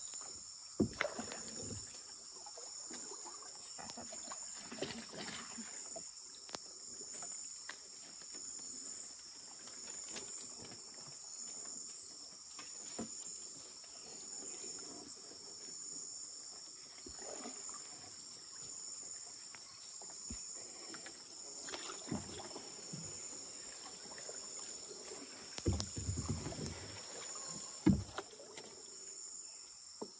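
Steady high-pitched chorus of insects in the flooded forest, continuous throughout. A few short knocks and splashes from the wooden dugout canoe and the water around it stand out, the loudest about a second in and again between 22 and 28 seconds.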